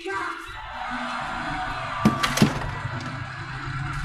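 Background music playing steadily, with two sharp knocks about two seconds in, half a second apart.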